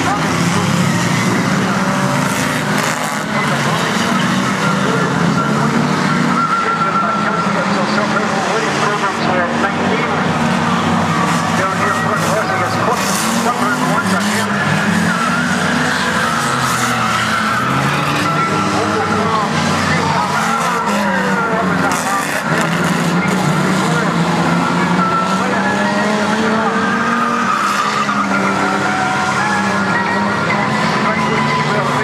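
A pack of banger-racing cars running hard around a tarmac oval, their engines revving up and down over one another with tyres skidding. A few sharp impacts of cars hitting each other come around the middle.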